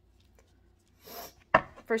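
After a second of near silence, tarot cards rustle briefly as they are handled, followed about a second and a half in by one sharp knock of the card deck against a wooden table.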